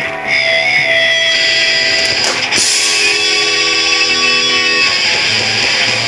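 Hardcore punk band playing live, an electric guitar leading the opening of a song, loud and steady with a sharp hit a little past two seconds in.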